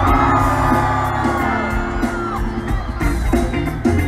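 Live band music in a concert hall, recorded from among the audience: drums and repeating bass notes under a long held note that falls away a little past two seconds in, with crowd whoops.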